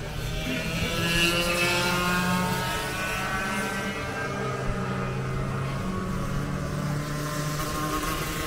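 Go-kart engines running on the track, loudest about a second in as one passes closest, its pitch then falling slowly as it moves away.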